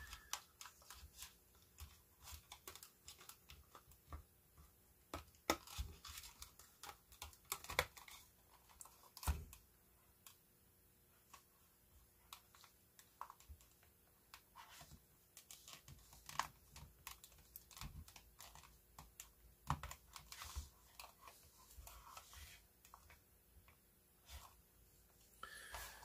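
Faint, irregular small clicks and taps of plastic as hands work the battery-compartment door off an Aiwa HS-RX650 personal cassette player, with a sharper click about nine seconds in.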